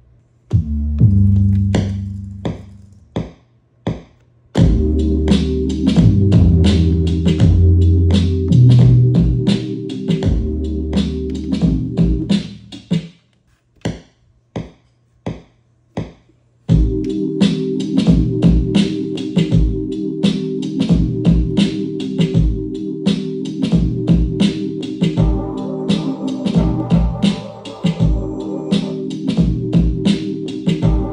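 Akai MPC 60 sampler playing a sampled beat: repeated drum hits over a low bass line. The beat stops about twelve seconds in, a few single hits follow, then it starts again, with a higher melodic part joining in near the end.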